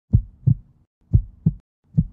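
Heartbeat sound effect: deep double thumps, lub-dub, one pair about every second, twice over.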